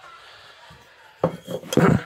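Handling noise from the filming phone as it is moved and covered: a faint hiss for about a second, then loud rubbing and knocking against the microphone, loudest near the end.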